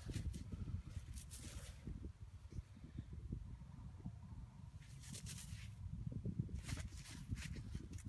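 Low, gusty rumble of wind on an outdoor microphone, with three brief rustles, about a second in, around five seconds in and around seven seconds in.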